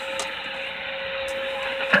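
Steady static hiss from a Stryker SR-955HP transceiver's speaker, tuned to lower sideband with no station transmitting. A brief click comes near the end, just before the next voice comes in.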